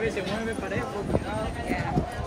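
A cavalry horse's hooves knocking on the stone cobbles a few times as it shifts its stance, with people talking in the background.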